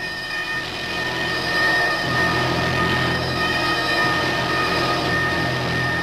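Sci-fi soundtrack: a steady rumble with sustained high synthesizer tones held over it. The low rumble swells about two seconds in.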